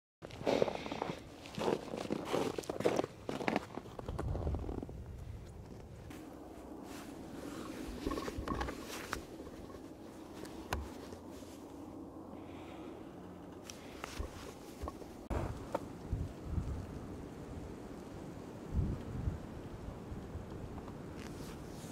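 Wind rumbling on an outdoor microphone, in low gusts on a steady background of outdoor noise, with irregular knocks and rustles of handling in the first few seconds.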